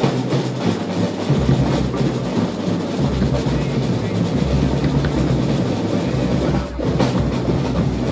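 A drum and lyre corps playing: a dense, rapid clatter of marching drums with bell lyres, breaking off briefly about seven seconds in.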